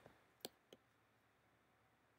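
Three faint keystrokes on a computer keyboard, close together near the start, over near silence.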